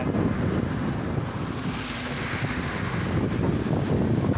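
Wind buffeting a phone's microphone over city street traffic noise, with a rush of noise swelling about halfway through.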